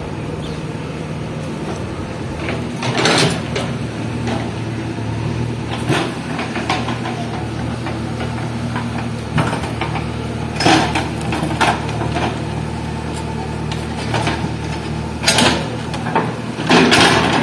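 JCB backhoe loader's diesel engine running steadily under load as its rear bucket digs a trench, with occasional short knocks and scrapes from the bucket in the soil and stones.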